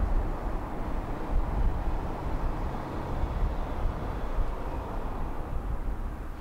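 Steady low road rumble and wind noise of a car moving along a street, with no engine note heard.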